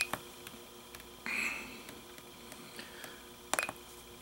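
Small clicks of buttons being pressed on a handheld Icom IC-R20 communications receiver, with a brief burst of noise about a second in and two sharper clicks near the end.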